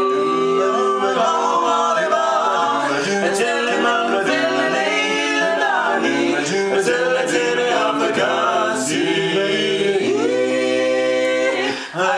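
Barbershop quartet of three men and a woman on lead singing a cappella in close four-part harmony. A long chord is held from about ten seconds in and cut off just before the end.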